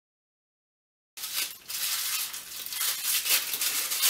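After about a second of dead silence, the crinkling and rustling of white wrapping being pulled off a small part by hand.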